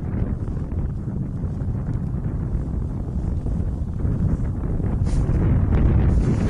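Wind buffeting the camera microphone outdoors in the snow, a steady low rumble.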